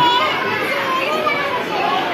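Children's voices and talk mixed into a busy murmur of chatter, with no single clear voice.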